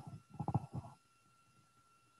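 A man's faint creaky throat sound, a low rattling vocal fry, into the microphone during the first second, then near silence. A faint steady high tone sits in the background throughout.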